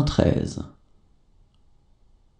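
A voice finishing a spoken French number, then faint room tone.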